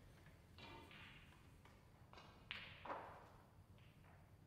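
Near silence: quiet hall room tone with a few faint, brief noises, the sharpest about two and a half seconds in.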